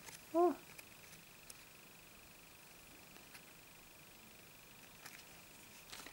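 Near silence with a faint steady high whine and a few faint light ticks of a paper bookmark and plastic sleeve being handled, after a brief spoken 'oh' near the start.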